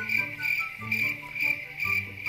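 Crickets chirping, laid in as a sound effect: a steady high-pitched trill pulsing about three or four times a second.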